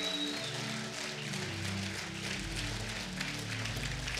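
Soft background music of sustained keyboard chords that shift slowly from one to the next, played under the pause in the speaking.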